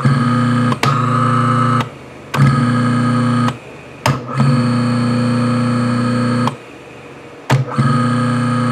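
Quarter-horsepower three-phase electric motor, fed from single-phase 240 V through a run capacitor across two phases, running with a loud, steady electrical hum. The hum cuts out suddenly three times, for about half a second to a second each, with sharp switch clicks at the breaks, as the reversing switch is flipped while the motor spins.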